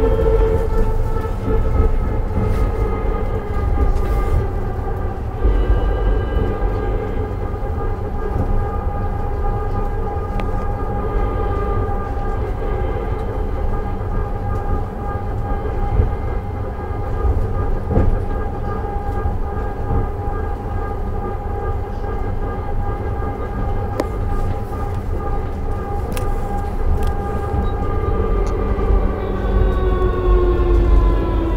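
Uijeongbu LRT light-rail car running, heard from inside the car: a steady low rumble under a layered electric motor whine. The whine dips slightly in pitch in the first few seconds, holds steady, then falls again near the end as the car slows.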